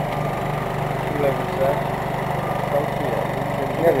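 An engine running steadily at idle, a low even hum, with voices of people working over it.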